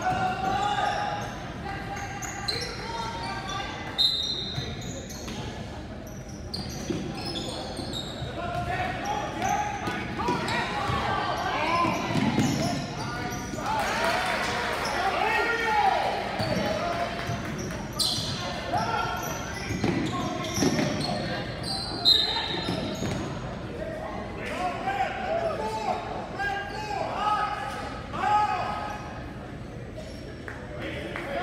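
Basketball game in a school gym: a ball bouncing on the hardwood court, with scattered shouting voices of players and spectators, all echoing in the large hall.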